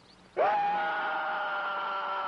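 A man's loud, long yell held at a nearly steady pitch, starting suddenly about half a second in and still going at the end.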